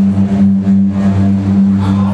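Live metal band playing through a hall PA: a loud, low sustained drone from distorted guitars and bass, swelling and pulsing slightly.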